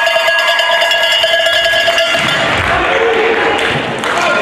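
A cowbell shaken rapidly by spectators, its clanging ringing out steadily before stopping about two seconds in, with cheering voices in a large hall around it.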